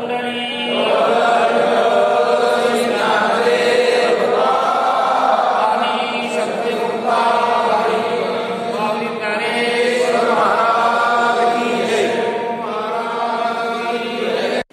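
Voices chanting a Hindu prayer together in long, drawn-out phrases, loud and continuous.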